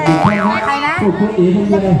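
Cartoon 'boing' sound effect: a quick springy rise and fall in pitch just after the start, laid over speech.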